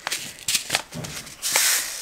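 Paper seed packet handled with a few light clicks and crinkles, then a short papery rustle near the end as cabbage seeds are shaken out.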